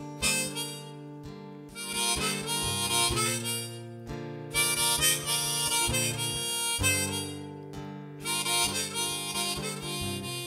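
Harmonica solo played from a neck-rack holder, in four phrases with short breaks between them. It is backed by sustained keyboard chords and acoustic guitar strumming.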